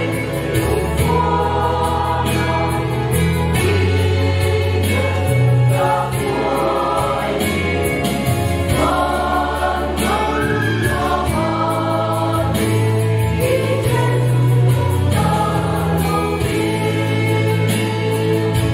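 Mixed choir of men and women singing a hymn in parts, over a steady low instrumental accompaniment whose notes change about every second.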